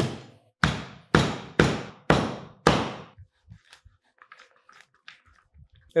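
Turbot cleaver chopping through a whole turbot's bony body onto a cutting board, cutting it into crosswise slices: six heavy chops about two a second that stop about three seconds in, followed by faint handling sounds.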